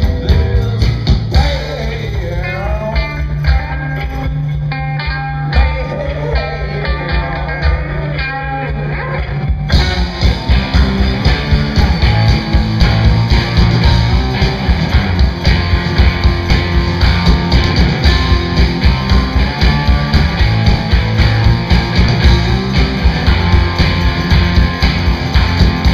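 Live rock band playing: for about the first ten seconds a held bass note under a wavering, bending lead line, then about ten seconds in the full band with drums and cymbals crashes in and plays on.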